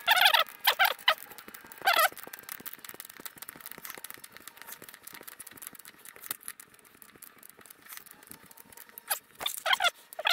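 Squeaking in a few short, high squealing bursts as an AN hose fitting is turned with a wrench onto braided stainless oil hose, near the start and again at the very end, with light metallic clicks of the tools in between.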